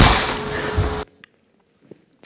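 Soundtrack of a short ad clip played over a hall's sound system: a sharp crack, then a second of noisy sound with a steady hum, cut off abruptly as the clip ends.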